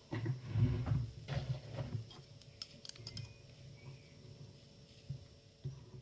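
Metal binder clips being fitted onto the edges of a paper pad: a few dull knocks of handling against the table early on, then scattered light clicks.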